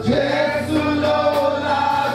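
Gospel worship singing: voices holding and gliding between long notes over steady instrumental backing.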